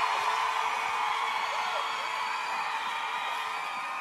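Studio audience applauding and cheering, slowly dying down.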